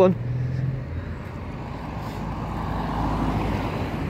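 Road traffic noise: a vehicle going by on the street, its rumble swelling to its loudest about three seconds in and then easing.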